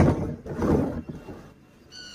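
Plastic rooftop water-tank lid being handled and closed: a knock, then about a second of scraping and rubbing of plastic. A short high squeak comes right at the end.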